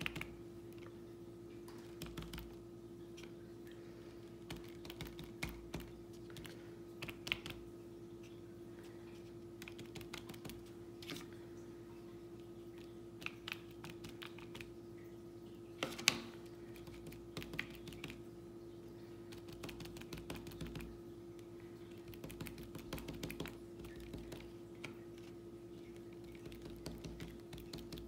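Cotton swabs dabbing paint onto paper laid on a wooden table: irregular soft taps, with one louder tap about sixteen seconds in, over a steady faint hum.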